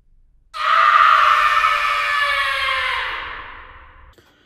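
A long scream, starting suddenly about half a second in, sliding slowly down in pitch and fading away over about three seconds.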